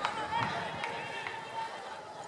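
Open-air athletics stadium ambience: scattered distant voices and calls of spectators and officials around the track, with a few sharp clicks.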